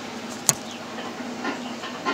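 A single sharp click about half a second in, from a hand handling the phone that is filming while it covers the lens, with faint handling noise around it.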